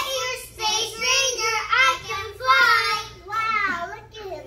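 A group of young children singing a song together into stage microphones, in short held phrases.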